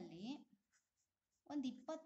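A pen writing on paper: a few faint short scratches in a pause between bursts of speech.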